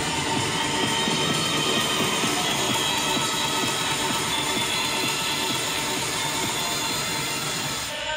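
Electronic dance music from a DJ mix on CDJ decks and a mixer: a dense, noisy stretch at a steady level, easing off slightly near the end.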